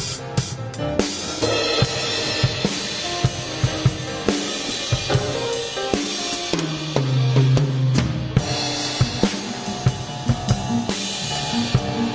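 Drum kit played close up in a live band: snare, bass drum and cymbals strike throughout over a wash of ride cymbal, with an upright bass line underneath.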